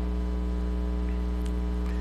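Steady electrical mains hum in the podium microphone's sound feed: a strong low hum with a ladder of fainter steady tones above it, unchanging throughout.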